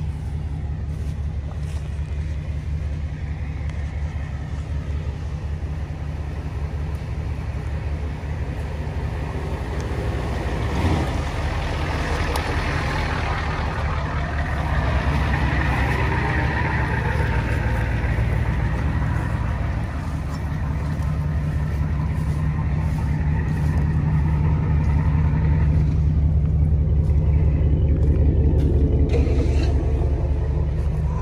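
Motor vehicle driving: a steady low engine and road rumble, getting a little louder over the last few seconds.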